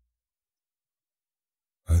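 Complete silence in a pause of spoken narration, then a man's deep voice starts speaking near the end.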